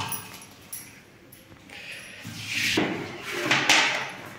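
Plastic spice box being opened: its plastic lid scraped off and handled, heard as two short scraping rustles in the second half.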